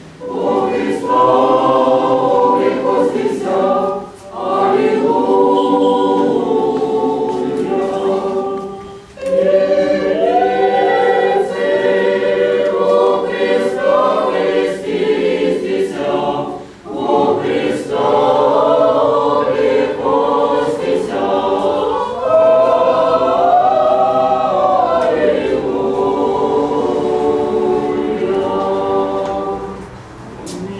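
Orthodox church choir singing Easter hymns a cappella, long sung phrases broken by brief pauses about four, nine and seventeen seconds in.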